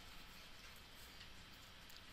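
Near silence: faint classroom room tone.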